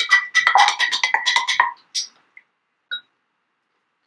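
Paintbrush being swished and rattled in a glass jar of rinse water: a quick run of ringing clinks against the glass that stops about two seconds in, followed by a few faint taps.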